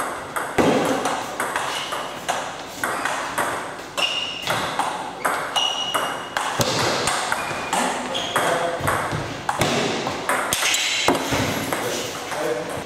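Table tennis rally: the ball clicking off bats and the table in quick succession, a few sharp hits a second.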